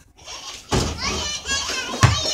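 Children's voices shouting and squealing in play, starting about two-thirds of a second in, high-pitched and wavering.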